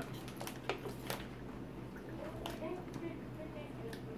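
Quiet, with a few faint clicks in the first second or so and another near the middle: someone drinking from a plastic water bottle and handling it.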